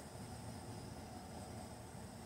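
Faint steady outdoor background noise, a low rumble with a light hiss, and no distinct sound events.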